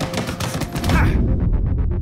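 A rapid flurry of sharp hits, punches landing in quick succession. About a second in, electronic music with a fast pulsing beat and heavy bass takes over.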